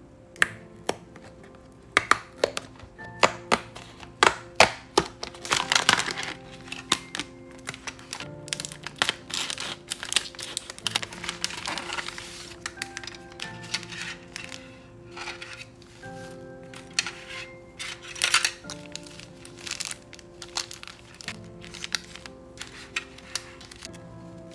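Plastic wrapping and cardboard of a Popin' Cookin' candy kit crinkling, with many sharp crackles and clicks as the pack is opened and its foil powder sachets handled. Soft background music plays underneath.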